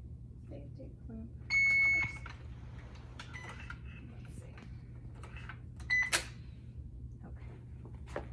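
Alaris infusion pump beeping during its start-up prompts: one clear beep of about half a second about 1.5 s in, a fainter short beep a little later, and a short beep with a sharp click near 6 s. Soft clicks of its keypad being pressed come in between, over a steady low hum.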